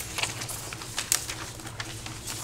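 Paper handouts rustling and clicking a few times over a steady low room hum.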